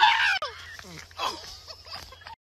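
Shrill, wavering shrieks from a person, loudest in the first half-second, with a shorter, fainter cry about a second later.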